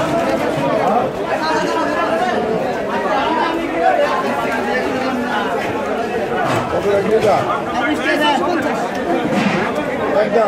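Many people talking at once in a crowded market: steady, overlapping chatter with no break.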